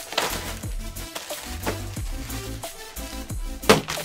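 Background music with a steady bass line, under scattered rustling and a sharp knock near the end as a packet is pulled out from behind a chair.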